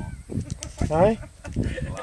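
Indistinct voices of people talking outdoors, with one short voiced utterance about a second in.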